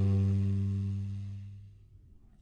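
Baritone saxophone holding a low final note that fades away over about two seconds.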